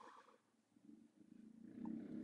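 Mostly near silence. Near the end a man's faint, low, drawn-out hum rises in and runs into his next words.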